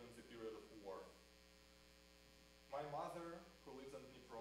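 Steady electrical mains hum under a man's speech, which breaks off for about a second and a half in the middle, leaving only the hum.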